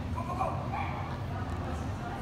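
A dog yipping and whining in short calls during the first second, over the steady low hum of a large indoor hall.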